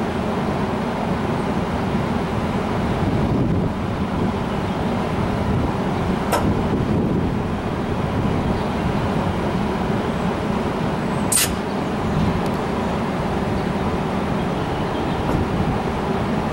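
Commuter train standing at a station, its idling diesel locomotive giving a steady rumble, with a brief tick about six seconds in and a short, sharp hiss of air a little past eleven seconds.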